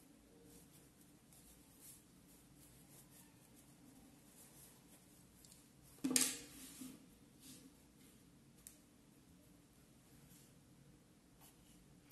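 Faint rustling and scratching of a cotton fabric pouch being handled and its corners pushed out with a wooden stick, with one sudden, much louder thump about six seconds in and a few light knocks after it.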